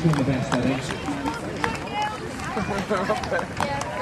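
Voices outdoors: a male announcer's voice trailing off near the start, with chatter of people nearby, and scattered footfalls of runners passing on grass.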